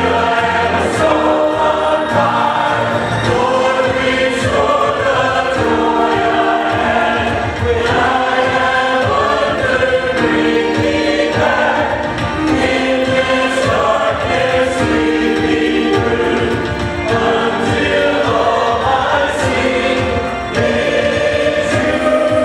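Mixed church choir of men's and women's voices singing a gospel song together, moving through a series of held notes.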